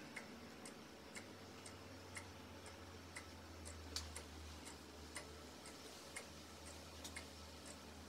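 Faint, regular ticking of a clock, about two ticks a second.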